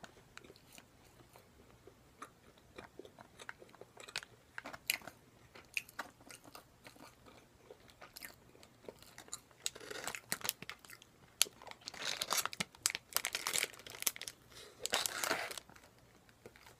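Close-miked crackling and crunching of plastic snack packaging being handled and torn open, in irregular clicks that thicken into loud clusters in the second half.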